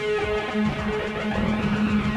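Music with a guitar part playing steadily.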